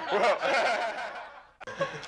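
Chuckling and laughter that die away to a brief silence about a second and a half in.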